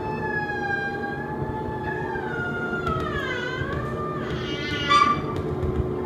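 Musical saw bowed in a long wavering tone that slides slowly down and back up, over a steady lower drone. A short, louder sound comes near the end.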